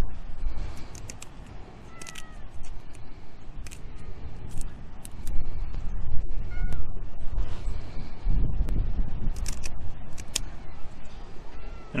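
Kitchen shears snipping through lionfish fin spines, an irregular series of sharp clicks, over a low rumble of wind on the microphone. A cat meows faintly a few times.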